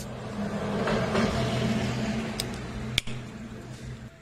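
A steady low engine hum with a swell of noise that rises and then fades, like a motor vehicle going by, with two short sharp clicks near the end.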